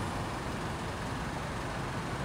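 Steady street background noise: a constant hum of traffic with no distinct events.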